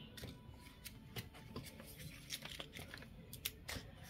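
Faint rustling and small clicks of paper being handled, with a few louder crackles near the end.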